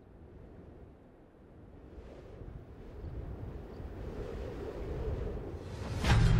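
A low, noisy rumble that swells steadily louder, a sound-effect riser building into a music sting.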